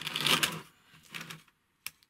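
Balsa-wood model pieces being handled and set against a plastic tree: light wooden clattering and rustling in the first half-second, a few soft knocks, then one sharp click near the end.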